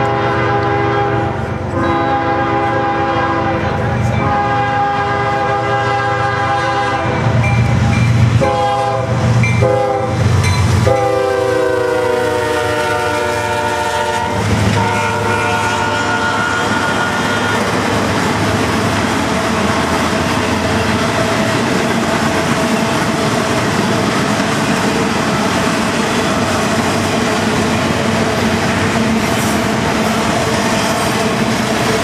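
A CSX freight locomotive's air horn sounds a series of blasts as it approaches, the last one long and falling in pitch as the locomotive passes. The train's cars then roll by with a steady rumble and wheel clatter.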